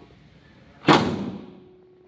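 Car bonnet on a Citroën Saxo slammed shut: one sharp slam about a second in, fading quickly.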